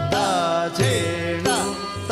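Odissi classical music accompaniment: an ornamented melody of gliding, bending notes, with two drum strokes near the middle.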